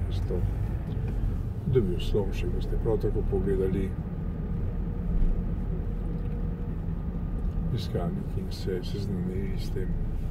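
Steady low rumble of a car driving through city streets, heard from inside the cabin.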